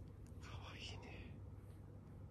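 A brief soft whisper, about half a second in and lasting under a second, over a low steady room hum.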